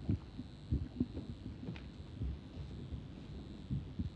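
Soft, low thumps at irregular intervals, the handling noise of a live handheld microphone being carried over and passed to an audience member.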